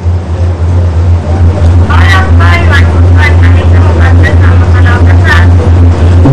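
A loud, steady low hum on a phone-in line, with a caller's voice coming through faint and broken from about two seconds in until near the end.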